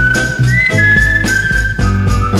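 Instrumental break of a 1972 Mandarin pop song: a high, clear lead melody in long held notes that step down in pitch, over a bass line and a steady beat of about two a second.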